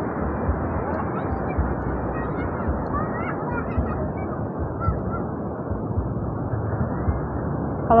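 Steady wash of beach surf with wind rumbling on the microphone, and a few faint, distant voices calling out about three to five seconds in.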